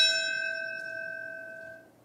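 A single bell strike ringing out and fading away over about two seconds, tolled in memory of a fallen firefighter whose name has just been read.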